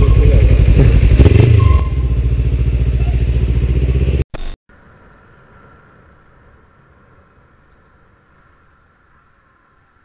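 Motorcycle engine idling with a steady, rhythmic low pulse. It cuts off abruptly about four seconds in, leaving a faint steady hum with a thin whine that fades almost to silence.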